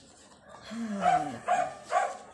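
A dog barking: three short barks in quick succession about a second in, after a low sound that falls in pitch.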